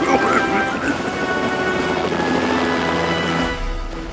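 Helicopter sound effect: steady rotor noise, laid over background music.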